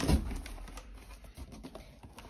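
Cardboard packaging box being handled: a soft thump at the start, then faint rustling and scraping that fade away.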